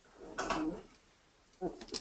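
A man's brief throat sound lasting about half a second, then a second shorter one near the end, just before he starts to speak.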